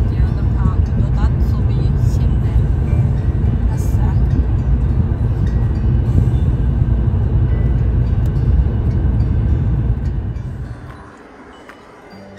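Steady low road and engine rumble inside a car's cabin at highway speed. Near the end it falls away abruptly to a much quieter background with steady musical tones.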